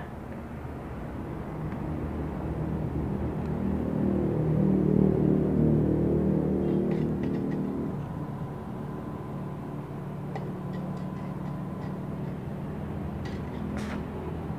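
A low rumble swells to its loudest around the middle and fades away about eight seconds in, over a steady low hum. Near the end the crackle of a stick-welding arc starts: the repaired H&L 160 A MOSFET inverter welder is making a test weld at a low current setting.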